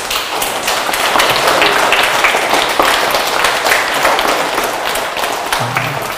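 A roomful of children clapping: dense, steady applause that starts suddenly and stops near the end.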